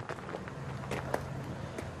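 Quiet background between remarks: a low steady hum with a couple of faint clicks about a second in.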